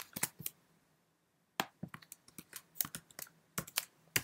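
Computer keyboard typing. There are a few key clicks, a pause of about a second, then a run of keystrokes.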